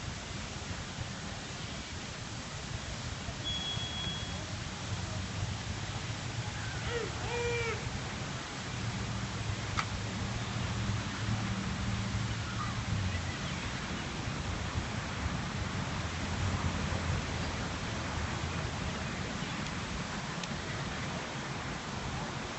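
Fountain jets splashing into a pool: a steady rushing hiss of water. Underneath it, the low drone of a passing airplane, strongest in the middle, with faint distant voices.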